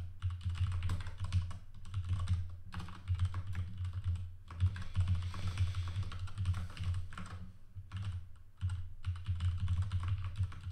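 Typing on a computer keyboard: fast runs of keystroke clicks, each with a low thud, broken by a few brief pauses.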